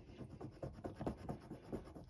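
A coin scratching the coating off a scratch-off circle on a paper savings-challenge card: a run of quick, faint scratching strokes.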